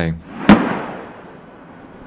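One heavy blast from a Paladin self-propelled howitzer's direct-fire 155 mm high-explosive shot: a sharp crack about half a second in, then a rolling echo that fades over about a second.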